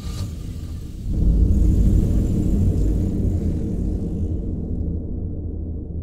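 Low rumble of a car that swells suddenly about a second in and fades away over the next few seconds, as a car drives past.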